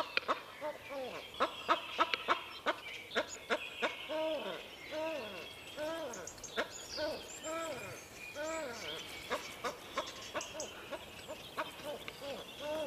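Capercaillie courtship display: sharp dry clicks, coming thickest in the first few seconds, among a steady series of short notes that rise and fall in pitch, about one or two a second.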